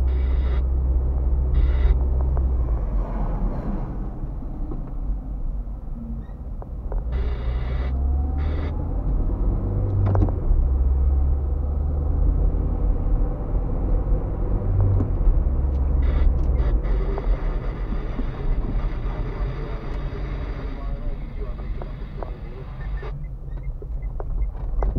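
A car driving through town, heard from inside the cabin: a steady low rumble of engine and road noise, with a few short, sharp clicks.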